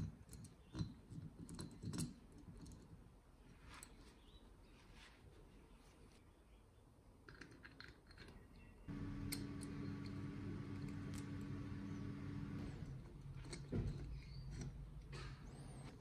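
Faint clicks and taps of small metal parts being handled and fitted, the power valve pieces and shaft of a two-stroke cylinder. About nine seconds in a steady low hum starts and runs for nearly four seconds, with a lower steady sound after it.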